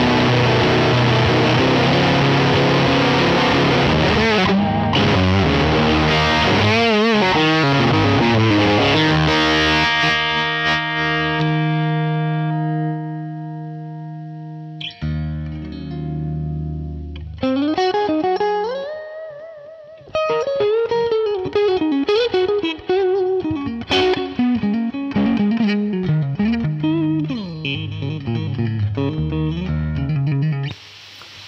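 Electric guitar (PRS SE Silver Sky) played through a Dunlop Fuzz Face Mini fuzz pedal into an amp emulator: thick fuzzed chords ring out and fade away about halfway through, then single-note lead phrases with string bends follow.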